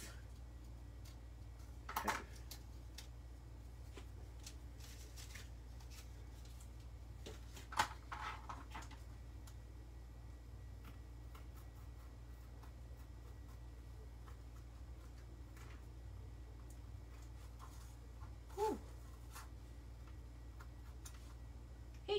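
Faint cutting on thin board: scissors snipping, then a craft knife scoring on a cutting mat, heard as scattered small clicks and scratches over a steady low hum.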